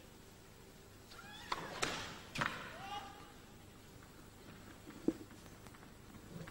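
Tennis ball bounced a few times on an indoor carpet court before a serve: sharp knocks between about one and three seconds in, mixed with short high squeaky sounds. A single dull thud comes about five seconds in.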